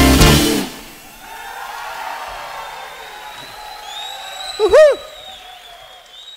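A Brazilian jazz quartet's final loud chord on guitars, bass and drums, cutting off under a second in, leaving the murmur of the audience in a large hall. Toward the end a high, steady whistle rises from the crowd, and about five seconds in a short, loud shout whose pitch rises and falls.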